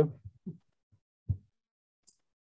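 The tail of a spoken word over a video-call line, then two brief, soft, low blips and dead silence in between, as the call's noise suppression cuts the audio.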